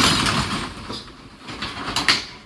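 Corrugated steel roll-up storage unit door being pushed open, a loud metallic rattle that is strongest at first and fades, with another clank near the end.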